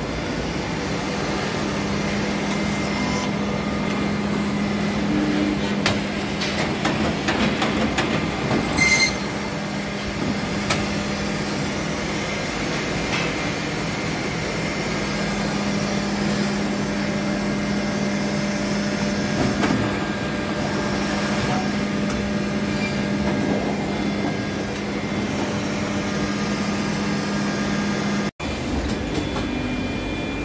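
CP Bourg BB 3002 PUR-c perfect binder running: a steady mechanical drone with a low hum, overlaid by irregular clicks and knocks, with a cluster of louder knocks about six to nine seconds in.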